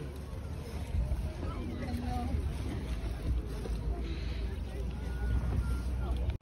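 Wind buffeting the microphone, a steady low rumble, with faint voices of people talking in the background.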